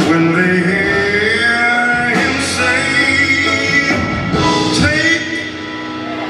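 Live jazz band playing, with a male voice singing long, gliding notes over it; the music drops back a little near the end.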